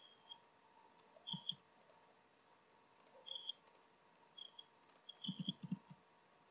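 Computer mouse clicking in short clusters, with a quicker, louder run of clicks near the end.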